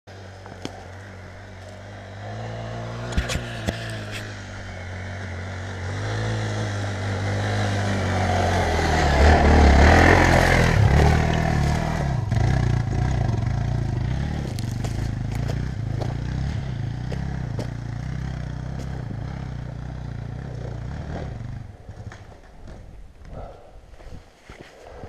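Dirt bike engine labouring up a steep, rocky hillclimb. It builds to its loudest about ten seconds in, then eases off and cuts out about two seconds before the end. A few sharp clicks sound near the start.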